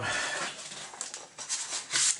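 Soft rustling and a few light clicks of a plastic comic display sleeve and a comic book being handled.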